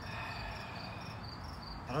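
Insects chirping in a quick, evenly pulsed, high-pitched rhythm over a faint low outdoor rumble.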